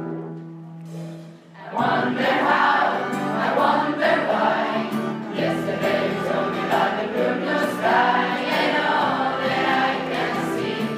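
Mixed choir of teenage voices singing with instrumental accompaniment. The first couple of seconds hold a soft sustained chord, then the voices come in at full strength.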